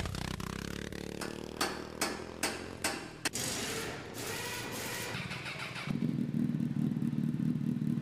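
Motorcycle engine sound effect under a logo intro: an engine starts and runs steadily, with five sharp knocks about two to three seconds in, then runs louder from about six seconds in.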